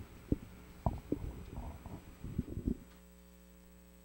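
Several short, low thumps of handheld microphones being handled, over a steady mains hum. The thumps stop about three seconds in, leaving only the hum.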